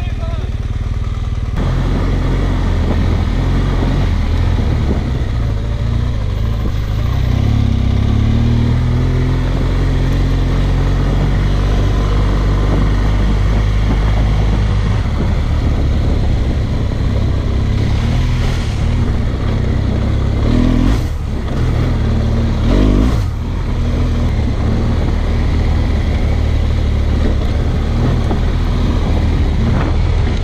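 Adventure motorcycle engine running while riding a dirt track, the engine note rising and falling with the throttle. There are two brief dips in level a little past two-thirds of the way through.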